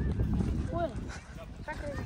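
A few short voice calls over a low wind rumble on the microphone.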